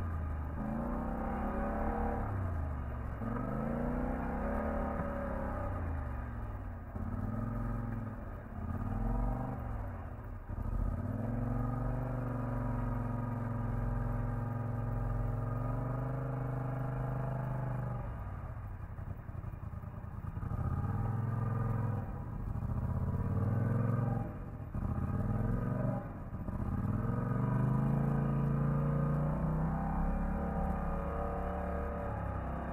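Polaris ATV engine revving up and down over and over as the quad is throttled through icy and muddy water, with a steadier stretch of held throttle in the middle.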